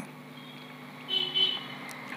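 A short, faint, high-pitched tone about a second in, lasting about half a second, over a low steady hum in a pause between spoken words.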